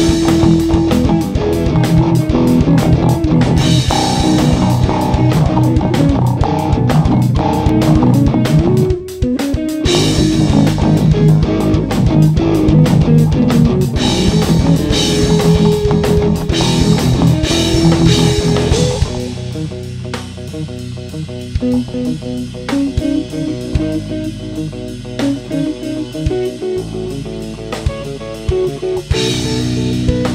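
Live rock band playing on drum kit, electric guitar and bass guitar, the drums and cymbals driving steadily. There is a brief break about nine seconds in. From about nineteen seconds the drums drop back and the guitars carry on more quietly, until the full band comes in again just before the end.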